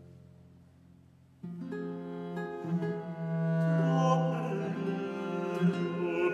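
Baroque continuo music: the end of a phrase dies away to near quiet, then about a second and a half in the accompaniment comes in suddenly, with held bowed bass notes over plucked theorbo, growing louder near the middle.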